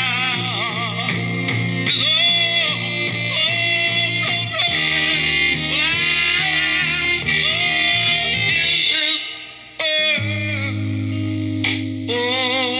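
A 1967 deep soul record plays from a 45 rpm vinyl single: a melody line with heavy vibrato over held bass notes. The music dips briefly a little before ten seconds in, then comes back with a new low bass note.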